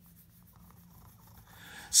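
Faint scratchy rustling of a cat's face and whiskers rubbing against a hand close to the microphone. Near the end comes a quick breath in, just before singing starts.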